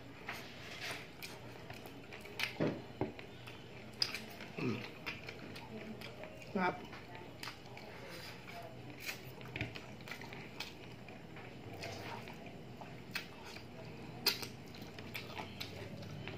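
Close-up eating sounds of a man chewing and sucking on chicken feet adobo, with scattered short wet mouth clicks and smacks.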